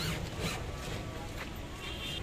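Short rasping strokes of an auto rickshaw's new black cover sheet being pulled and rubbed over the rear frame by hand, with a brief high whine near the end.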